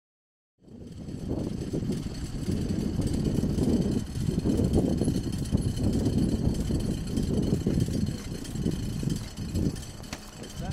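Airfield noise: a steady, uneven low rumble with a faint high whine above it, starting about half a second in.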